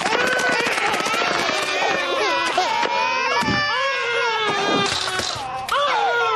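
Several babies crying at once, their cries overlapping without a break, with a brief dip in loudness near the end.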